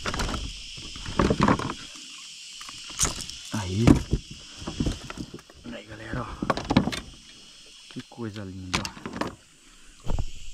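A few sharp knocks and clicks from handling a caught arowana held in a lip grip over a plastic fishing kayak. Under them runs a steady high drone of insects.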